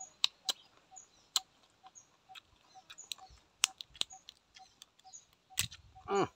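Field crab shell cracking and crunching as it is chewed and broken apart by hand, a series of sharp, irregular clicks and snaps. A faint short tone repeats about twice a second behind it.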